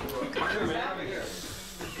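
A man's wordless stammering vocal sounds trailing off, with a hiss in the second half.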